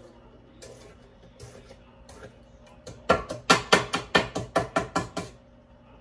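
A metal mixer beater rapped against the rim of a stainless steel mixing bowl to knock off thick muffin batter: a few light clinks, then about ten quick, sharp, ringing raps, roughly five a second, from about three seconds in.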